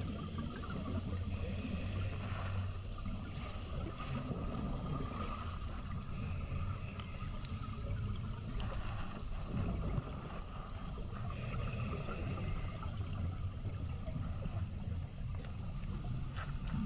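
Underwater rush of fast spring water against a GoPro housing in strong current: a steady low rumble.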